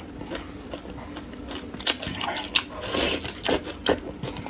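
A person eating spicy sauce-coated noodles close to the microphone: wet chewing and slurping, with a few short sharp clicks and smacks in the second half.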